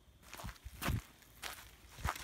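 A few uneven footsteps on grass and dirt, each a short soft scuff.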